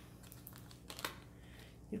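Tarot cards being handled and turned over: a few faint light clicks and taps of card against card, about a second in and again near the end.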